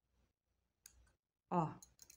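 Small steel scissors snipping through polypropylene cord, one sharp click just under a second in.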